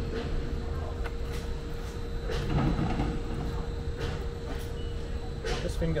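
A few soft clicks and rustles as a steel roof bracket is held against the headlining and an M6 bolt is threaded finger-tight into a captive nut, over a steady faint hum.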